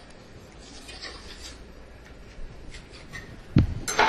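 Faint scraping and light ticks of a metal offset spatula working under baked tuile strips on a silicone baking mat, then a single low thump near the end as a strip is lifted and handled at the canister.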